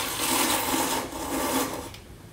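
A person slurping udon noodles from a bowl held at the mouth: two long slurps, with a brief break about halfway.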